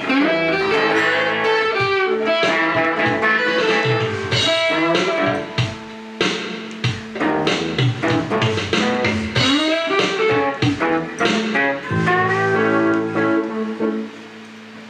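Live guitar music: a resonator guitar and an electric guitar playing together, busy picked notes over sustained chords. The playing stops right at the end.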